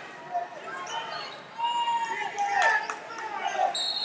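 Voices calling out across a large hall, with a few sharp knocks about two and a half seconds in.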